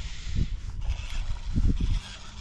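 Wind buffeting the microphone: a low, uneven rumble in gusts, strongest about half a second in and again near the end.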